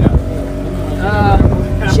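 A small passenger boat's motor running at a steady pitch, with a voice speaking briefly about a second in.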